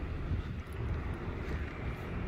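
Low, steady street traffic noise, with some wind on the microphone.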